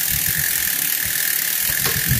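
Rear freehub of a mountain bike ticking as the rear wheel spins, with the chain running over the cassette. There is a sharp click near the end.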